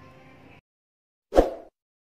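A single short, loud pop sound effect from an animated subscribe-button end card, about one and a half seconds in. Faint background hiss cuts off to dead silence just before it.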